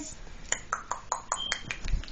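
A run of light clicks and taps, about five a second, with a brief high ping in the middle and a low thump at the end.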